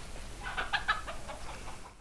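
Faint outdoor ambience with a few short, distant chicken clucks about half a second to a second and a half in.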